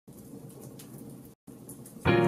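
Wood fire crackling faintly, with a short break in the sound about one and a half seconds in.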